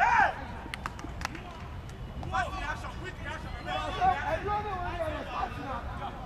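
Players and onlookers shouting on a football pitch: one loud, short shout at the start, a few sharp knocks about a second in, then several voices calling out over each other.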